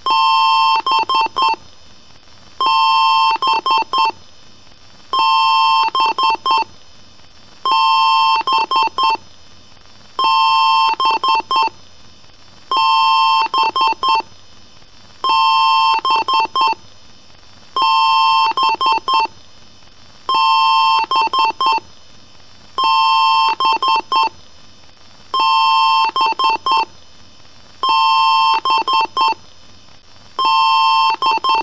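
Computer BIOS speaker beeping during the power-on self-test, in a repeating pattern: one long beep of about a second, then three or four quick short beeps, the group coming round about every two and a half seconds.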